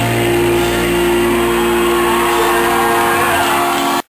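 A rock band holding a final distorted chord through the venue's PA, the guitar and bass notes sustained at a steady pitch as the song rings out.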